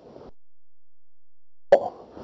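Faint room tone cuts to dead digital silence for over a second. The audio then comes back with a sharp click and a brief vocal sound.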